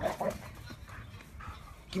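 Pit bull giving a short vocal sound at the start while it plays with a plush toy, followed by low, scattered rustling.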